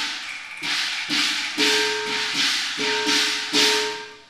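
Chinese opera percussion: cymbals and a gong struck about twice a second, each crash ringing on, dying away near the end.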